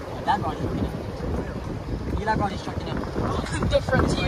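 Wind buffeting the camera microphone, a steady low rumble throughout, with a few brief snatches of voices.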